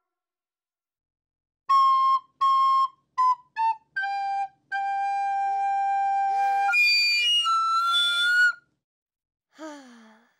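Recorders being played: a few clear notes stepping down in pitch, ending in a long held note. Then a shrill, squeaky blast from a second recorder, played badly.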